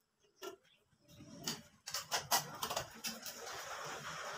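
Small plastic clicks and scraping from a wall switch and its plastic cover plate being handled and fitted: a single click about half a second in, then a run of clicks and scratches through the rest.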